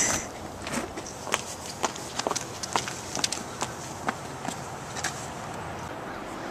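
Footsteps and scuffs on an asphalt driveway: a string of irregular short clicks, a couple a second.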